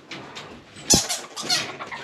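Squirrel monkeys scrambling on ropes and wire cage fronts: a sharp knock about a second in, then a few quick clicks and rattles.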